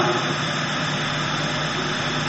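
Steady, even background noise with a faint low hum, unchanging throughout.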